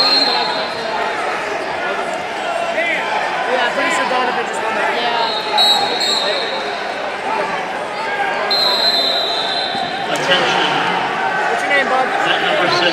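Busy arena hubbub: many people talking at once, echoing in a large hall, with three shrill, steady whistle blasts of about a second each from referees on the wrestling mats, and a single knock near the end.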